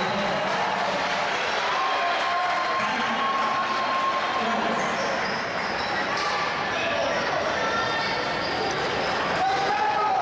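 Basketball game sound in a large, echoing gymnasium: a ball bouncing on the hardwood court amid steady crowd and player voices and shouts.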